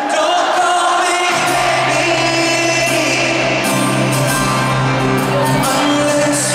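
Live concert music from a stadium PA, heard from the audience stands: a male lead vocal over the band, with a deep bass line coming in about a second in.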